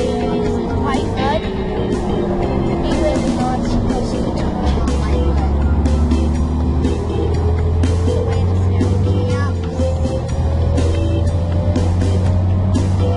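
City transit bus driving, heard from inside the cabin: a steady engine drone that deepens about four and a half seconds in, with a whine that slides down and then climbs again as the bus changes speed. Background music plays over it.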